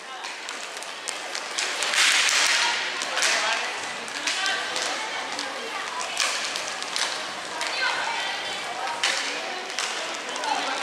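Live inline hockey play: sharp clacks of sticks and the hard puck on the rink floor, over voices of players and spectators, with a louder burst of noise about two seconds in.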